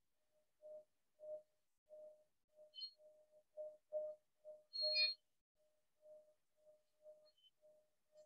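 Metal singing bowl sounding a faint single tone that swells and fades about twice a second as its rim is circled, with a brief brighter, higher metallic ring about five seconds in, the loudest moment.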